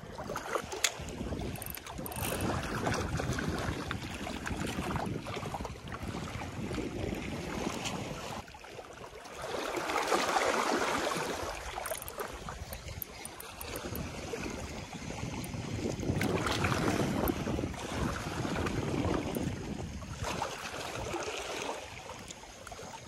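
Wind buffeting the microphone over the wash of sea water, rising in gusts about ten seconds in and again around sixteen seconds.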